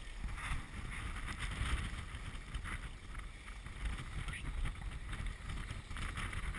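Wind blowing on the microphone, a steady low rumble, with a few faint clicks.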